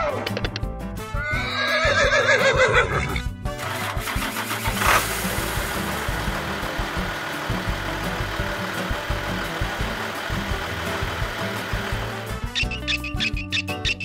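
A horse whinny sound effect, one wavering call of about two seconds starting a second in. It is followed by a steady vehicle engine sound effect lasting most of the rest, over background music.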